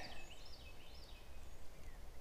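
Faint bird song: a few short whistled notes sliding up and down, then a couple of falling slides near the end, over low steady outdoor background noise.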